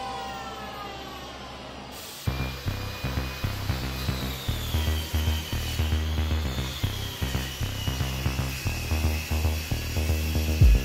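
An electric hand planer winding down after being switched off, its whine falling away over the first two seconds. From about two seconds in, background music with a steady beat.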